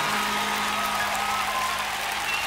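Audience applause and cheering over a steady, held keyboard chord.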